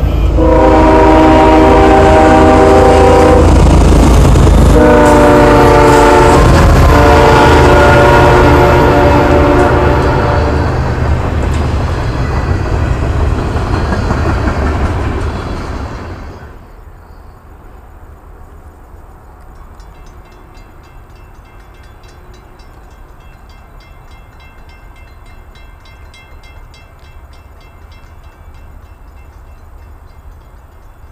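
A CSX GE diesel freight locomotive sounds its multi-note air horn in two long blasts, the second longer, over loud engine and wheel rumble as the train passes. The rumble cuts off suddenly about 16 seconds in, leaving only a faint background with light ticking.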